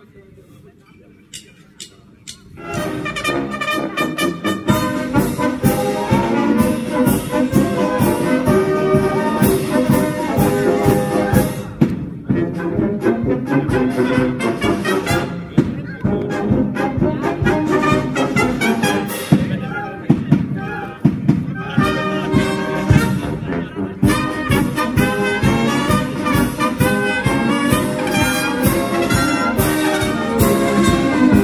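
Wind band of brass, clarinets and flutes starting a piece about two and a half seconds in, playing on loudly with a regular beat.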